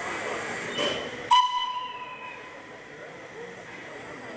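Steam whistle of the narrow-gauge steam locomotive 'Plettenberg' giving one short blast of about a second, starting abruptly, over a steady hiss of steam.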